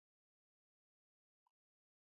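Near silence: the audio track is digitally silent.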